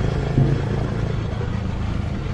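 Motorcycle riding along with its engine running steadily, mixed with a rumble of wind on the microphone. A brief voice-like blip comes about half a second in.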